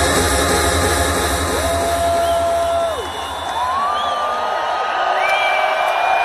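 Electronic dance music played loud through an arena sound system, with a crowd cheering and whooping over it; the heavy bass drops out about three seconds in.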